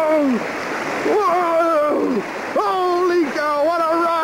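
A person yelling several long, high, wavering wordless cries over splashing and rushing white water as a canoe is paddled through rapids.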